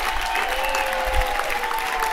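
Audience and performers applauding, with several long held cheers over the clapping and a single low thump a little after one second in.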